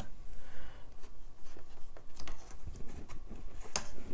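Wooden popsicle stick stirring and scraping acrylic paint in a plastic cup, a soft irregular scratching, with a few sharp clicks, the loudest near the end.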